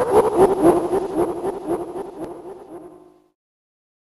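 A drawn-out laugh, a quick string of ha-ha pulses that sink slowly in pitch and fade away, dying out about three seconds in.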